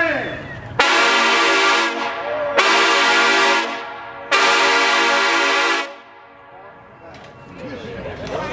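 Trombone section playing three loud sustained chords together, each about a second long with short breaks between. The third is held longest before they all cut off together.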